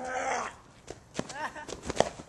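Boys' voices making short wordless sounds and laughter, broken by a few sharp knocks.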